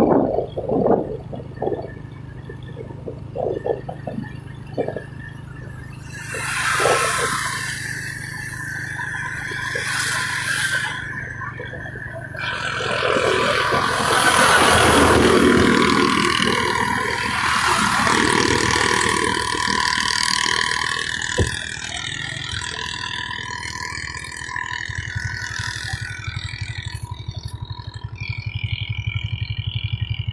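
Engine of the vehicle carrying the camera running steadily, with a low hum and the rush of road and wind noise. The rush swells in the middle and fades again as it drives past a long line of stationary trucks.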